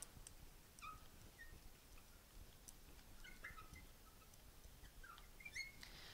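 Faint, brief squeaks and ticks of a marker writing on a glass light board, scattered irregularly, some sliding slightly in pitch.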